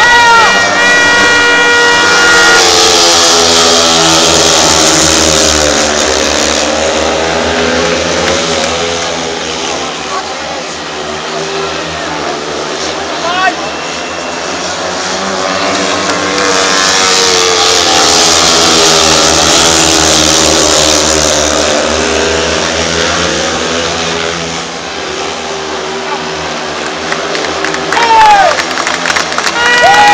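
Speedway motorcycles' single-cylinder methanol engines racing around the dirt track, their note rising and falling in pitch through the corners. The engines swell loudest twice as the riders pass close by and fade between passes.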